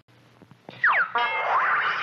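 Soundtrack of a vintage animated TV commercial bumper: after a faint low hum, two quick falling pitch slides about three-quarters of a second in, then the bumper's jingle music starts.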